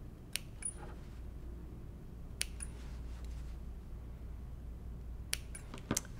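Small Gingher embroidery scissors snipping into the seam allowance of a sewn fabric and interfacing piece: a handful of sharp, separate metallic snips spaced over several seconds, two of them followed by a brief high ring. The cuts clip to, but not through, the seam at each point so the piece will turn nicely.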